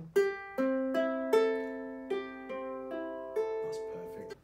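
Nylon-strung ukulele, single notes plucked one after another, about seven in all, each left to ring: the open strings being sounded to show that the two ukuleles are tuned alike.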